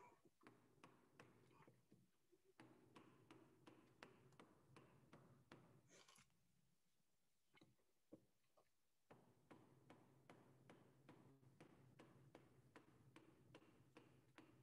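Wooden mallet knocking on the handle of a two-inch carving gouge, chopping out the inside of a wooden bowl blank: a steady run of faint, sharp knocks about three a second, stopping for a few seconds midway, then resuming.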